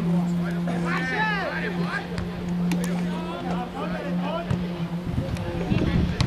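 Distant shouts of players across an outdoor football pitch, loudest about a second in, over a steady low hum, with a few sharp knocks.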